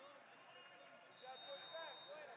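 Faint, distant voices calling out in a large echoing hall, with a thin steady high tone coming in about a second in and holding.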